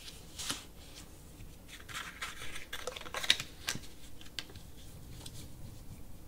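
Cardstock hinge being folded and creased back and forth by hand: paper rustling and scraping, with several short sharp clicks from the folds, the loudest a little past three seconds in.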